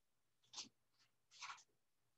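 Whiteboard being wiped with an eraser: two brief, faint swishes, one about half a second in and one near the middle, otherwise near silence.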